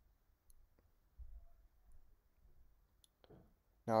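A few faint, isolated clicks over quiet room tone, with a soft low bump about a second in and a short breath near the end.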